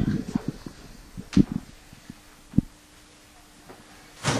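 A few dull thumps and knocks, a cluster at the start and the loudest about one and a half and two and a half seconds in, over a faint steady hum.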